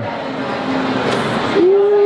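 Indistinct room chatter, then about a second and a half in a single steady pitched note starts with a short upward slide and is held.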